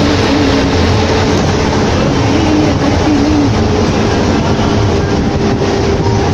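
Interior noise of a bus travelling at speed: a loud, steady mix of engine rumble, road noise and cabin rattle.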